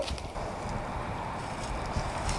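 A vehicle driving slowly up toward the microphone, a steady low rumble of engine and tyres.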